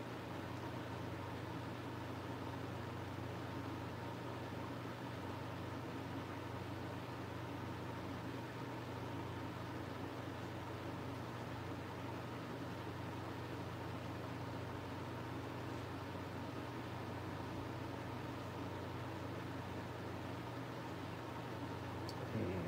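Electric fan running steadily: an even whoosh of air over a constant low hum.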